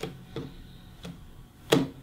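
A deck of playing cards being cut and set down on a wooden tabletop: about four light taps and clicks, the loudest near the end.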